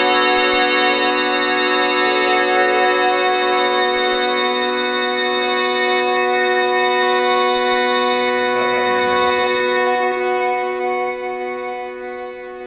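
Electronic keyboard with an organ voice holding one sustained chord, its notes steady and unchanging, then fading away near the end.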